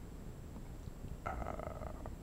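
A pause in a man's talk over a low, steady background rumble, broken in the second half by a drawn-out hesitation 'uh'.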